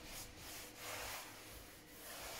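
A cloth scrubbing the worn upholstery of an old folding theatre seat, a faint scuffing rub in repeated back-and-forth strokes.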